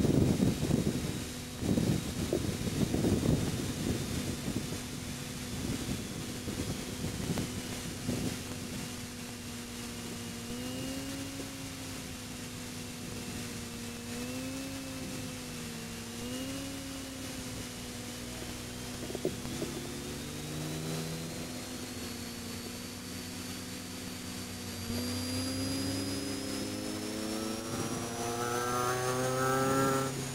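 Supercharged 1.6-litre four-cylinder of a 2006 Mini Cooper S JCW race car, heard from inside the cabin: running at low revs through a slow corner, then accelerating through third gear near the end, its engine note and thin supercharger whine rising together. Gusty wind buffeting on the microphone in the first several seconds.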